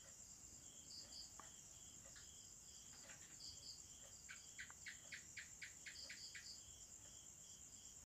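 Faint crickets chirring steadily, with scattered high chirps and, a little past the middle, a run of quick chirps at about four a second for some two seconds.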